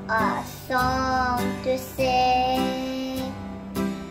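A young girl singing a song in held notes, each lasting up to about a second, over a quieter instrumental backing.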